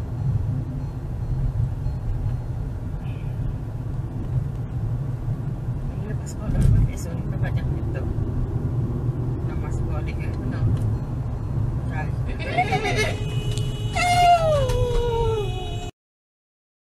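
Steady low rumble of road and engine noise inside a moving car's cabin, with a single thump about six and a half seconds in. Near the end, high cries rise up, and the loudest of them falls steadily in pitch.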